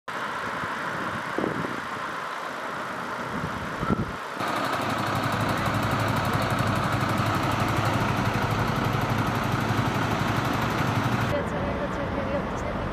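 A Eurocopter EC135 rescue helicopter's turbine running on the ground: a steady drone with a fast, even chop from the turning rotor, starting about four seconds in and cutting off abruptly near the end. Before it there is only faint outdoor noise with voices.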